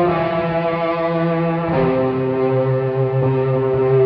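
Live electric guitar lead on a Les Paul-style guitar, held in long sustained notes over the band, moving to a new long held note about two seconds in.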